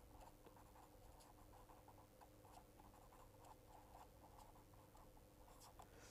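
Faint scratching of a marker pen writing on paper: a quick, irregular run of short pen strokes as a word is written out.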